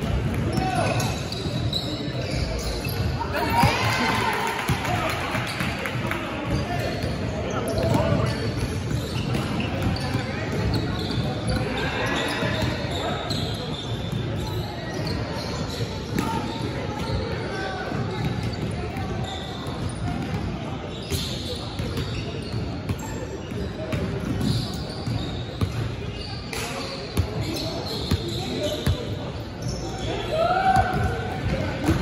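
A basketball dribbling and bouncing on a hardwood gym floor during play, with knocks throughout, echoing in a large hall. Players' voices call out over it.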